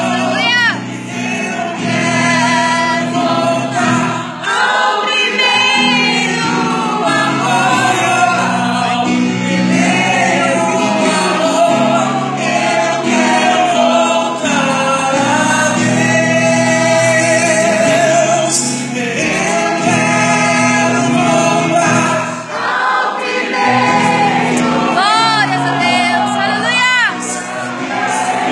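A man singing a Portuguese gospel song through a microphone and PA, over sustained backing accompaniment; he holds long notes with vibrato.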